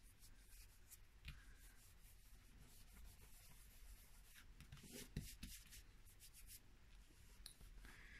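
Faint rubbing of hands over the paper liner of an adhesive sheet, pressing it down onto a thin napkin on cardstock, with a few light taps.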